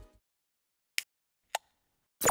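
Two short, sharp pops about half a second apart, with silence around them: sound effects of an animated graphic transition.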